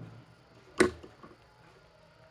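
Felt-tip marker being handled as one pen is swapped for another: one sharp click about a second in, followed by a couple of faint ticks, then quiet.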